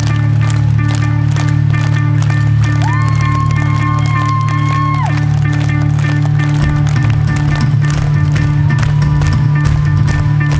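Rock band playing live over a festival PA: a steady low bass drone under fast, dense percussion. A high note is held for about two seconds near the start, and the bass turns choppy about two-thirds of the way through.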